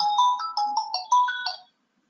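A phone ringtone: a quick melody of short electronic notes stepping up and down in pitch, about five a second, that cuts off suddenly near the end.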